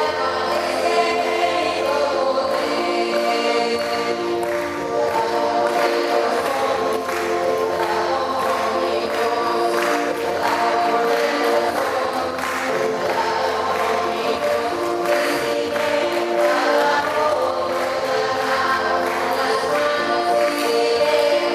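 A choir singing a hymn in long, sustained notes, continuing steadily throughout.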